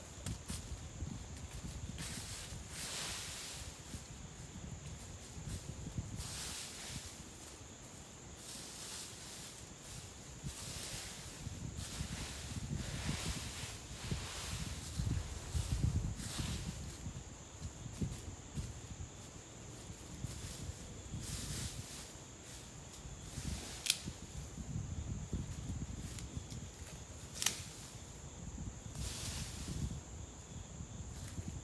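Footsteps scuffing and trampling through dry leaf litter on a forest floor, irregular crunching and rustling of leaves throughout, with two sharp clicks in the last few seconds. A steady high-pitched insect drone runs underneath.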